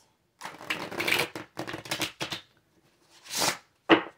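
A tarot deck being shuffled by hand, in a quick run of papery card rustles for about two seconds, then one more short shuffle and a sharp tap near the end.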